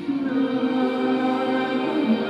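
Progressive rock band playing live: a male singer's held vocal line over sustained keyboard chords, which change just after the start.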